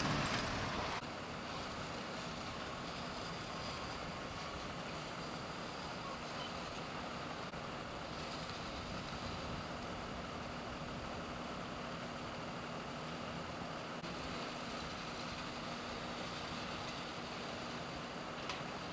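Steady roadside background noise with a faint, even low engine hum from idling vehicles. A louder stretch fades out in the first second, and no distinct event stands out after that.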